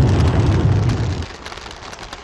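An animation sound effect: a loud, deep rumbling burst that drops away after about a second into a faint crackle.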